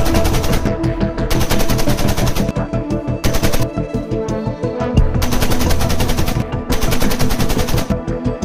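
Belt-fed machine gun firing several long bursts of rapid shots with short pauses between them, over a background music track.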